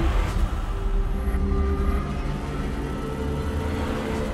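Film score sound design: a loud, deep rumbling drone with a few held low notes over it, loudest in the first two seconds and easing slightly after.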